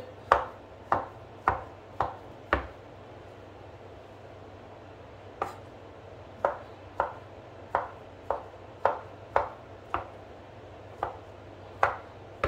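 Kitchen knife chopping imitation crab on a wooden cutting board: sharp knocks of the blade on the board, about two a second. The chopping pauses for about three seconds a little after two seconds in, then picks up again.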